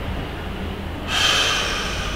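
A man's audible breath, a breathy sigh or exhale lasting about a second that starts about a second in, over a low steady room hum.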